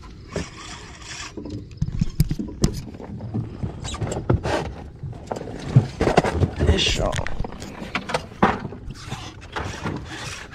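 Irregular knocks, clatter and rustling from someone moving about in an aluminium fishing boat and handling a fishing rod.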